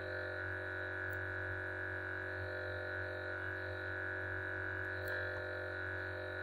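A steady, unchanging electronic hum made of several held tones, with no rhythm or breaks.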